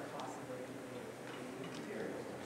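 Faint, low talk in a large room, with a few light clicks: about one near the start and two close together late on.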